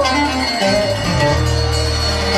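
Live norteño band music led by a button accordion, with plucked strings and held bass notes underneath.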